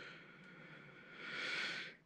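A quiet pause with faint room noise, then a soft breath drawn in that swells over the last second.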